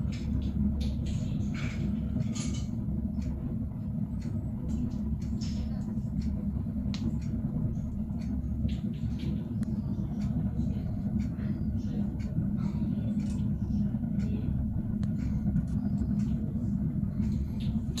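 Pellet fire burning steadily in a stove's burner pot, its flame drawn up the riser tube, giving a steady low rumble with scattered faint crackles.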